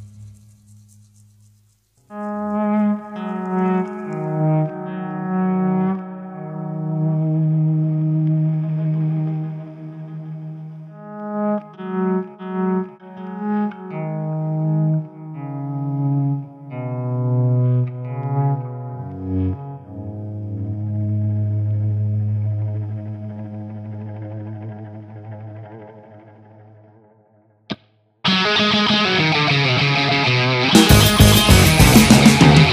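Rock music: after a brief pause, an electric guitar alone plays slow, held notes through effects and echo. Near the end the full band comes in loudly.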